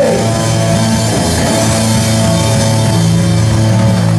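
Live rock and roll band playing an instrumental passage: electric guitars, electric bass and drum kit over a steady, driving beat.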